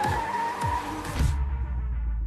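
Movie sound mix of a vehicle skidding: a long, high squeal of tyres over musical score, broken by several knocks and impacts. About one and a half seconds in the squeal cuts off abruptly, leaving a steady low rumble.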